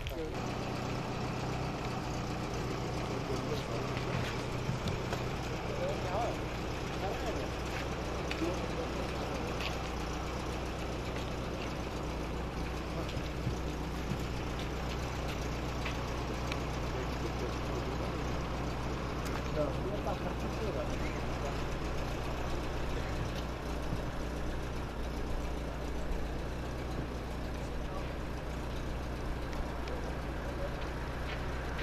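A vehicle engine idling steadily, with a low continuous hum, under faint background voices.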